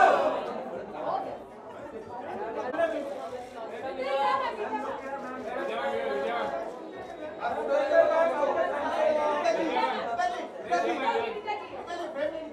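A crowd of many voices chattering and talking over one another in a large room, with no single voice clear.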